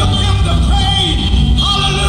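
Live gospel band playing, with electric guitar, bass and drums under a male lead vocal singing praise lyrics.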